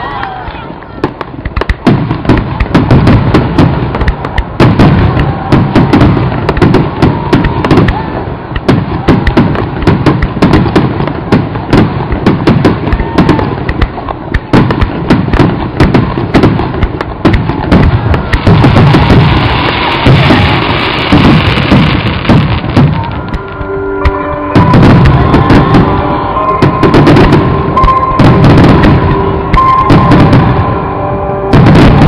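Dense barrage of aerial firework shells bursting, a rapid string of bangs and crackles with hardly a gap. About three-quarters of the way through, music with steady held notes comes in over the bursts.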